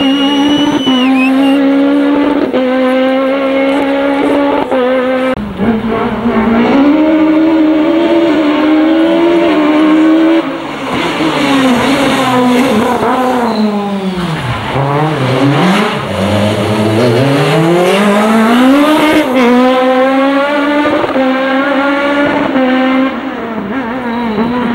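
Peugeot 306 Maxi kit car's naturally aspirated 2.0-litre four-cylinder rally engine running at high revs, with small steps in pitch as it shifts. Around the middle its pitch falls steeply, then climbs back up as it accelerates again.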